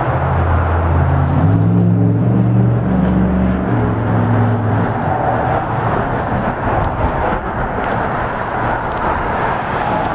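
Steady road traffic noise, with a heavy vehicle's engine droning low in the first few seconds, its pitch stepping up as it pulls away, then fading into the traffic.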